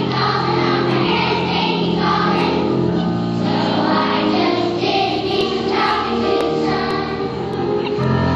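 Young children's choir singing a song together, the voices stopping near the end.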